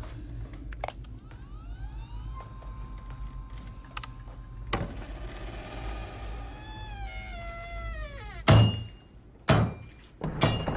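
Film score and sound design: eerie rising sliding tones, a held steady note, then a set of falling glides, followed by two heavy thuds about a second apart near the end.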